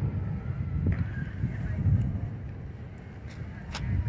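Low, uneven outdoor rumble, with a few faint clicks about a second in and again near the end.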